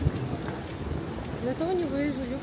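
Traffic and street noise with a low rumble, and a person's voice starting about one and a half seconds in.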